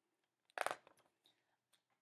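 A page of a picture book being turned: one short papery rustle about half a second in, then near silence.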